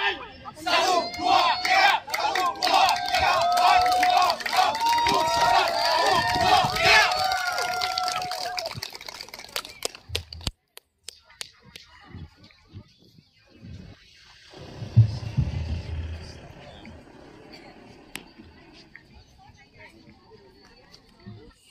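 A crowd of voices shouting and cheering together for about eight seconds, then dropping to a low murmur of chatter.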